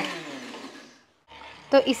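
Electric mixer grinder (mixie) motor switched off and winding down: its hum falls in pitch and fades out within about a second.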